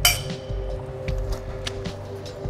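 A sharp metallic clink right at the start as the overhead crane hook is freed from the lifting sling, ringing on briefly, followed by a few faint small knocks over a steady low hum.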